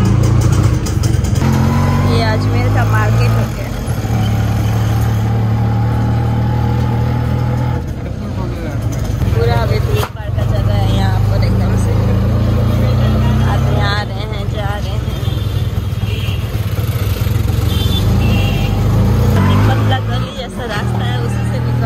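Auto-rickshaw engine heard from inside the open passenger cab while it drives, a steady low drone that eases off and picks up again a few times as the rickshaw slows and speeds up in traffic.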